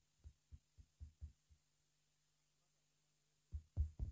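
Soft, low puffs of a man's breath hitting the microphone through a cloth held over his mouth: a quick run of about four a second, a pause, then another run near the end.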